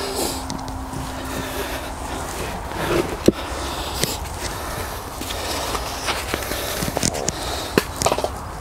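Hands working soil while planting seedlings, with soft scraping and rustling and a few sharp knocks, about three seconds in, about four seconds in and near the end, over a steady low rumble.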